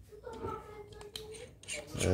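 A few light clicks and taps of a FeiyuTech handheld gimbal's parts being fitted together by hand, with a faint held tone underneath.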